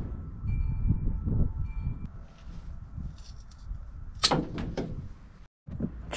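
Rubber transmission cooler hose being handled and measured, then cut with heavy-gauge wire cutters: a cluster of sharp snaps about four seconds in.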